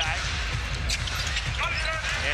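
A basketball bouncing on a hardwood court as it is dribbled, over steady arena crowd noise.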